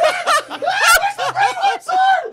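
Several people laughing hard in quick, repeated short bursts.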